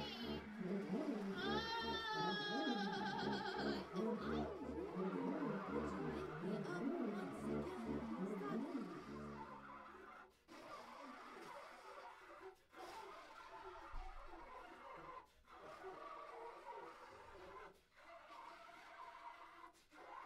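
Large improvising ensemble playing a dense passage: wailing, wavering high glides over a low pulse about once a second. About halfway through it thins to a quieter, sparser texture broken by short near-silent gaps every two to three seconds.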